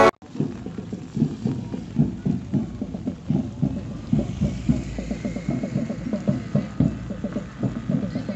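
A chorus of frogs croaking in flooded rice paddies: many short, low calls overlapping at an irregular rapid pace, several a second.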